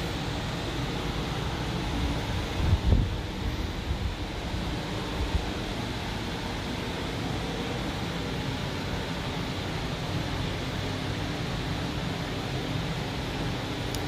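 Steady hum and hiss of a shop's air conditioning, with a few low thumps about three seconds in and again near five seconds.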